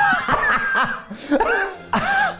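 A person laughing in several short, high-pitched bursts.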